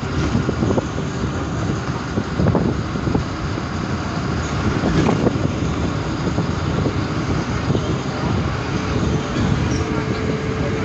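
Steady rumble of a moving bus, engine and road noise together with rushing air, heard from inside the cabin.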